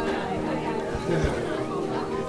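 Several people chatting, with background music playing.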